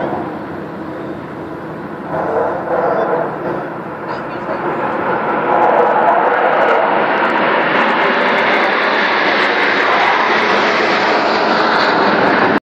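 Jet noise from a formation of four military jets flying overhead. It builds to a loud, steady roar from about halfway through and holds to the end.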